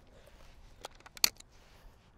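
Break-action shotgun being opened after firing: a few sharp metallic clicks, the loudest about a second and a quarter in, as the action unlatches and the barrels drop open.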